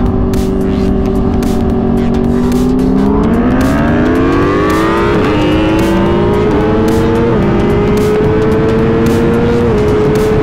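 Inline-four sportbike engine running at a steady speed, then opened to full throttle about three seconds in. Its pitch climbs and drops sharply at each of several quick upshifts as the bike accelerates hard.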